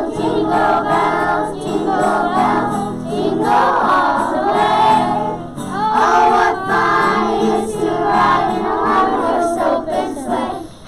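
A group of kindergarten children singing a song together in chorus, continuously.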